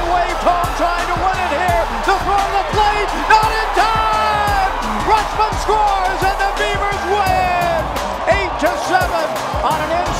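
Excited shouting and cheering from many voices, a string of short yells rising and falling in pitch, with music underneath and scattered claps and knocks.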